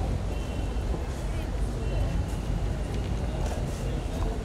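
Indistinct background voices over a steady low rumble of ambient noise.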